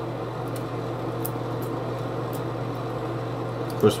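Steady low mechanical hum, like a fan or air-conditioning unit running, with a few faint light clicks of scissors snipping a small piece.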